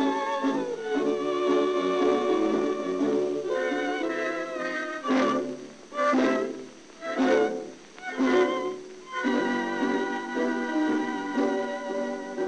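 Instrumental passage of a 1930s tango recording: violins carry a melody with vibrato over the band. In the middle it breaks into four short accented notes about a second apart, then the sustained melody resumes.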